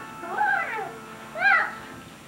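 A young child's voice making two short, high whiny cries, each rising and then falling in pitch. The second is the shorter and louder one, about one and a half seconds in.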